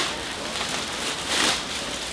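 Clear plastic poly bag crinkling and rustling as a hoodie is pulled out of it.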